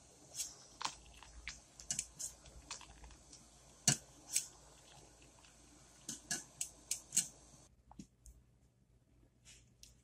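Light, irregular metallic clicks and taps as a stainless mesh strainer of rice noodles is jostled in a pot of hot water, over a faint steady background that drops away about three-quarters of the way through.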